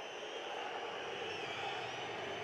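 Football stadium crowd whistling in disapproval of the home side: several shrill, wavering whistles held over a steady crowd noise.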